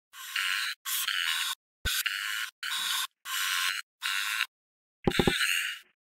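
Seven short strokes of a marker pen drawing on paper, each about half a second long, separated by silent gaps. The last stroke starts with a low knock.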